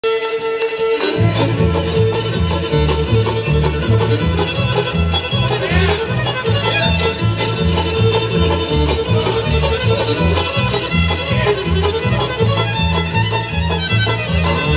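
Bluegrass band playing an instrumental, the fiddle leading with long bowed notes over a steady upright bass line and banjo and guitar; the bass comes in about a second in.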